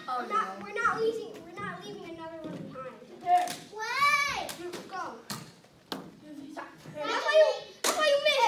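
Children talking and calling out while playing, with a few sharp clicks between their voices.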